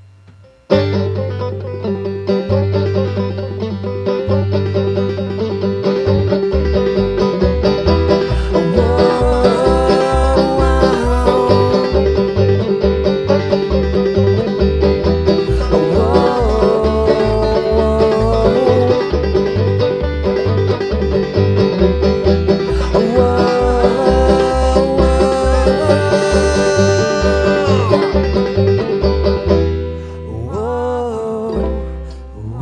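Live bluegrass-style string band music on banjo, acoustic guitar and upright bass, with no singing: the instruments come in together suddenly under a second in, and a steady plucked upright-bass line joins about six seconds in under fast banjo runs.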